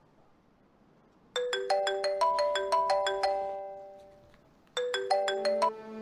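Smartphone ringtone: a quick melody of short struck notes starts about a second in, dies away, and begins again near the end.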